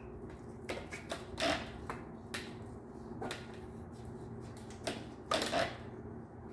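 Irregular clicks and knocks of a bike's threadless stem being worked off the fork steerer tube and handled, two of them louder, about a second and a half in and near the end, over a steady low hum.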